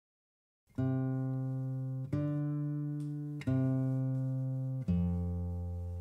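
Acoustic guitar playing the opening chords of a song: four chords, each struck once and left to ring, about a second and a half apart, starting just under a second in. The fourth chord has a deeper bass note.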